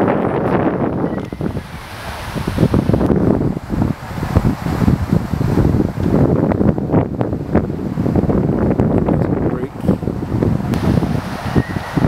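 Wind buffeting the microphone in uneven gusts, with voices in the background.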